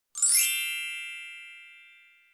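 Sparkle chime sound effect: a burst of high twinkling notes settling into a ringing chord that fades away slowly.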